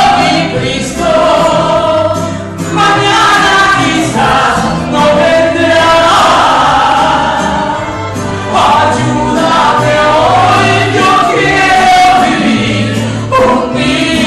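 A woman singing a gospel worship song into a microphone through the church PA, with live band accompaniment and a steady bass line underneath.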